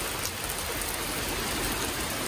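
Heavy rain shower pouring steadily onto a wet tarmac road and paving, an even hiss of falling water.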